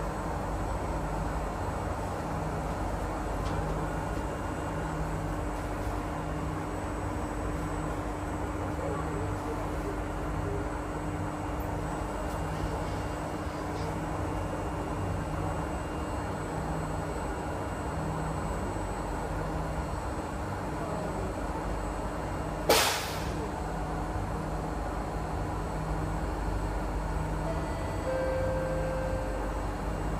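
Steady hum inside a stationary MRT train car standing at a platform with its doors open, with a low tone pulsing about once a second. One sharp knock sounds about three-quarters of the way through.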